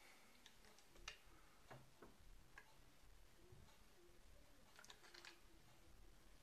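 Near silence with a few faint, scattered clicks and taps as an old Winchester 1873 lever-action rifle is handled and turned over.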